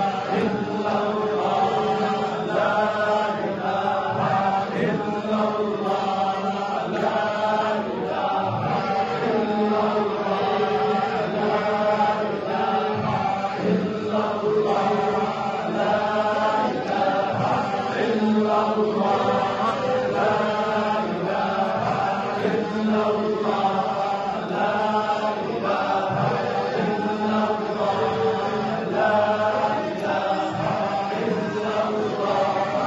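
A group of men chanting Sufi hadra dhikr in unison, repeating a short phrase over and over in a steady rhythm.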